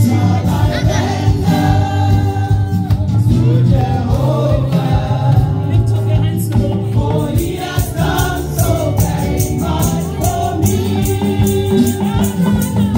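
Live gospel praise music: singers led over a band with a steady bass line and shaker-like hand percussion keeping the beat.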